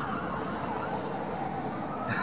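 Steady outdoor background noise with a faint constant hum underneath, with no distinct event standing out.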